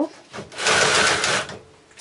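Carriage of a double-bed knitting machine pushed across the needle beds once, knitting a row: a rushing, rattling slide about a second long.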